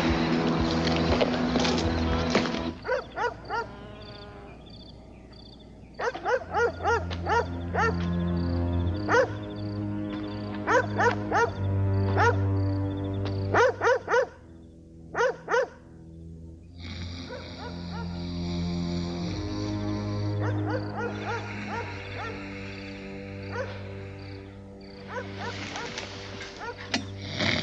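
A dog barking in repeated bursts of short sharp barks, mostly in the middle of the stretch, over a low, sustained music score.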